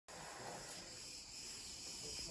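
A steady, high-pitched chorus of insects.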